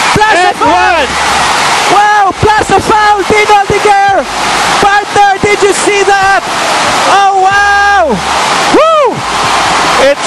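Basketball arena crowd roaring and cheering a made shot and foul, with a commentator's voice shouting excitedly over it, from an old TV broadcast.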